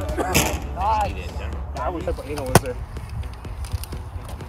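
People's voices talking and calling out around a wiffleball game, with one sharp crack of an impact about two and a half seconds in.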